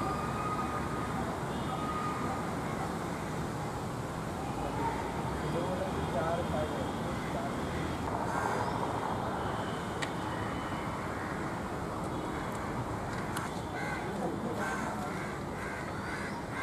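Outdoor background: a steady noise haze with indistinct distant voices and a few faint bird calls, with crows cawing near the end.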